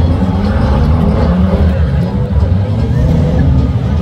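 Several 2-litre National Saloon stock cars racing, their engines running hard, the pitch rising and falling as they lift and accelerate.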